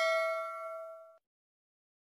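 Bell 'ding' sound effect from a subscribe-button animation: a single struck chime with several ringing tones that fade, then cut off suddenly about a second in.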